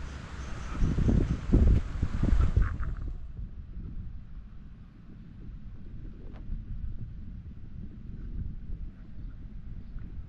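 Wind buffeting the camera microphone, in loud gusts for about the first three seconds, then settling into a quieter low rumble with a few faint ticks.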